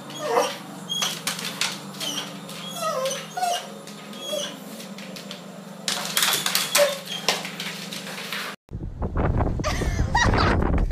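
A dog whining in repeated short, falling whimpers over a steady low hum. Near the end the sound cuts to wind buffeting the microphone.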